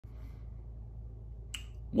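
Quiet room tone with a steady low hum, and a single short click about one and a half seconds in.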